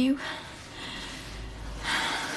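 After a woman's last spoken word there is faint room tone, and near the end a person takes a short, sharp breath in.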